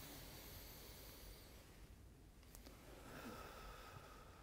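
Near silence: faint room tone with a slow, quiet breath drawn in and let out during a deep-breathing exercise.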